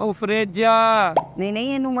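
Speech only: a voice talking in long, drawn-out exclamations.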